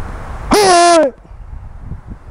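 A man's short, loud shout, a martial-arts kiai, about half a second in: the pitch jumps up, holds and sags slightly over about half a second, loud enough to distort.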